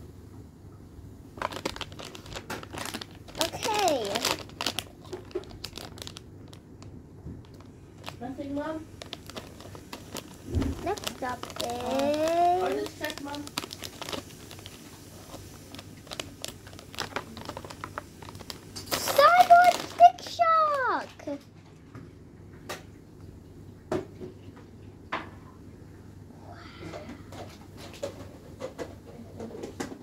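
Foil blind-bag packet crinkling and crackling as it is handled and cut open with scissors, with a child's voice rising and falling now and then, loudest about twenty seconds in.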